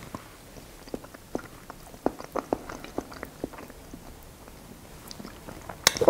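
A person chewing a mouthful of soft tortellini in tomato sauce, close to the mic: soft, irregular wet mouth clicks, thickest in the first half, with one sharp click just before the end.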